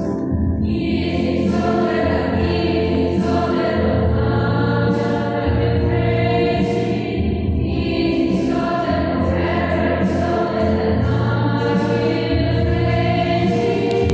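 Group of voices singing a hymn at Mass, continuous over sustained low accompaniment notes that shift every couple of seconds.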